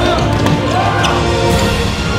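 Background music with a basketball being dribbled on a hardwood court beneath it.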